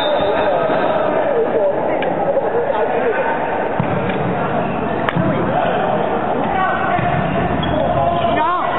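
Spectators and players shouting over one another in a large sports hall during a volleyball rally. The smack of the ball being struck cuts through, most clearly once about five seconds in.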